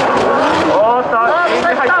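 Two drift cars, a GR86 and an RX-7, sliding sideways in tandem: engines held at high revs with tyre noise from the spinning, sliding rear wheels.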